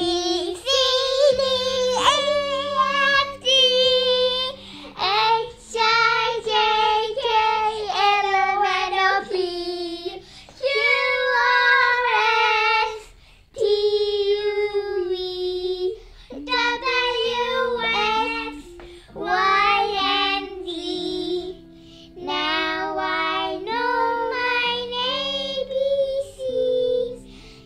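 A child singing a children's song in short phrases over a simple instrumental backing track.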